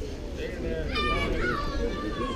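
Children's voices calling and shouting across a youth baseball field over a murmur of other voices, with a long high-pitched call about a second in that slides down in pitch.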